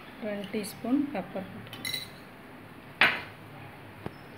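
Glass kitchen bowls clinking: a light clink about two seconds in, then a sharper knock about three seconds in with a short ring.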